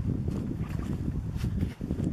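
Wind buffeting the microphone of a hand-held camera outdoors: an irregular low rumble with a few brief crackles.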